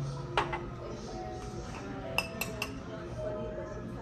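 A drinking glass knocked down onto the table about half a second in, then a metal spoon clinking three times in quick succession against a ceramic bowl, with a short ring after each.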